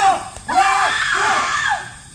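Several voices screaming and shouting over one another in short, high, rising-and-falling cries.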